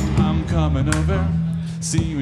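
Live rock band playing between sung lines: a steady bass line and drums with guitar, and a melody line that bends and slides in pitch.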